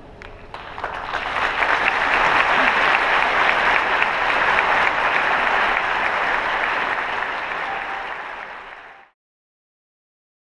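Audience applauding at the end of a choral performance: the clapping swells over the first couple of seconds, holds steady, then tapers and cuts off suddenly about nine seconds in.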